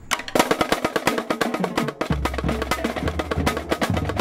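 Marching drumline playing snare drums in rapid, tightly packed stick strikes that start just after the beginning. A low steady bass comes in underneath about halfway through.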